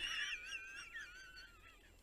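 A person's high-pitched, wheezy laugh trailing off, a thin wavering squeal that slides down in pitch and fades out before the end.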